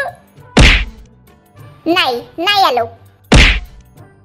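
Two heavy cartoon thunk sound effects, one about half a second in and one near the end, each brief and deep. Between them come two short falling voice-like sounds.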